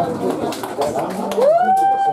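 Voices right after the music stops: chatter with scattered knocks, then one drawn-out high 'ooh' call that rises in pitch about a second and a half in and holds.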